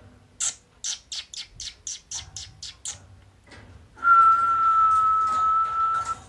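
A quick run of short, high squeaky clicks, about four a second, then a single steady whistled note held for about two seconds: a person whistling to a pet bird.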